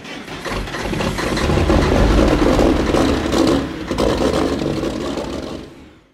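Heavy diesel truck engine running and revving, swelling up over the first couple of seconds and then fading away near the end.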